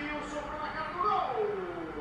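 Speech: a voice talking.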